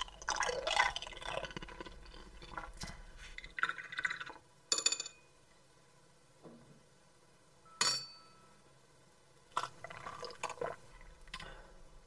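Wet mouth sounds of eating, then a wine glass clinking sharply twice, about five and eight seconds in, the second time with a brief ring. Near the end come irregular mouth sounds of drinking from the glass.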